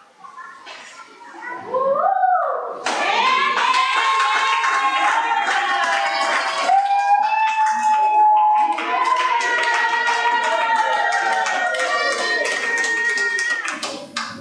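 Church congregation's voices rising about two seconds in into long drawn-out calls, with hand clapping that becomes a steady beat of about four claps a second in the second half.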